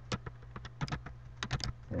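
Typing on a computer keyboard: irregular key clicks, bunched together about one and a half seconds in, over a steady low hum.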